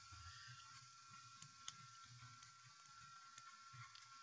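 Near silence: faint room tone with a steady high hum and a few soft ticks of a stylus on a tablet as handwriting is drawn.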